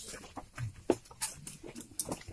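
Footsteps and shuffling of a group walking through a stone tunnel: a string of irregular short scrapes and clicks, with faint murmuring voices in the background.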